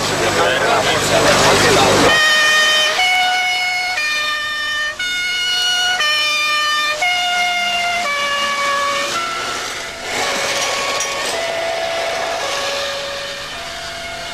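A loud rushing noise for about two seconds. Then a slow tune of held, horn-like single notes, each lasting half a second to a second and stepping up and down in pitch.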